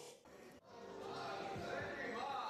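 Faint room sound that breaks off about half a second in at a cut between clips, then a man's voice that starts about a second in and grows louder.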